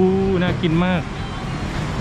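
A man speaking briefly in Thai, then a steady hum of street traffic.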